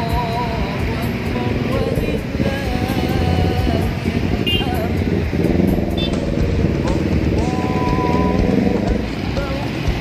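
Motor scooters and motorbikes running and passing at low speed in a crowded street, with a crowd of voices chattering.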